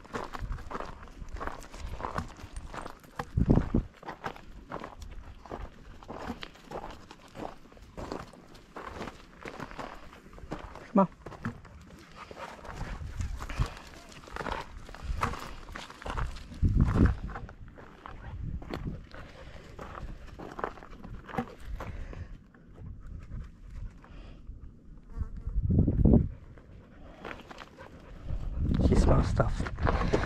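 Footsteps crunching irregularly on a rocky gravel trail, with a few louder low thumps spaced through it.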